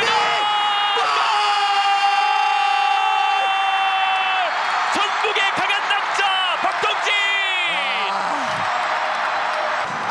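A football commentator's long, held goal shout, lasting about three and a half seconds before dropping off, over a stadium crowd cheering a goal. Shorter excited shouts follow.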